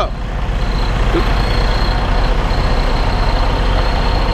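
Tractor-trailer's diesel engine running at low speed as the truck reverses slowly, a steady rumble heard from beside the cab.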